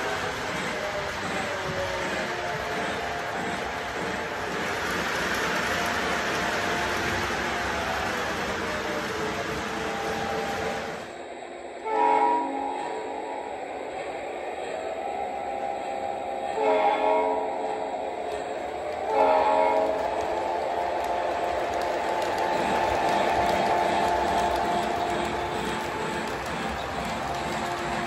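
O-gauge model trains running on the track with steady rolling and motor noise, then three loud blasts of a model locomotive's electronic horn in the second half.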